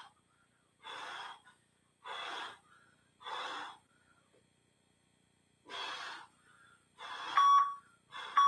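A man breathing hard through press-ups: five short, forceful breaths about a second apart, with a longer pause in the middle. Near the end comes a short electronic beep from an interval timer, the start of its countdown to the end of the work period.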